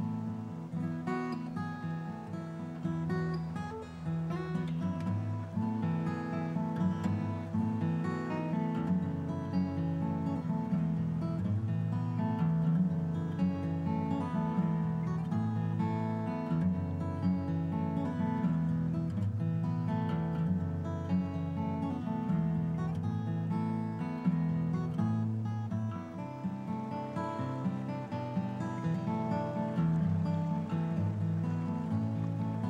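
Background music: a strummed and picked acoustic guitar playing steadily.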